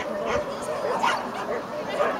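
A dog barking in a few short, sharp barks, with people's voices in the background.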